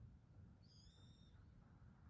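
A single faint, high-pitched bird call lasting under a second, about a second in, over a low steady background rumble.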